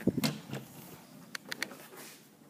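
A front door being pushed open by hand, with a low knock as it swings at the start and a few sharp clicks about a second and a half in.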